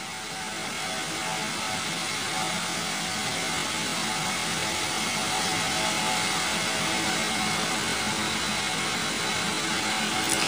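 Steady, even whirring noise with a faint hum, unchanging throughout, with no distinct events.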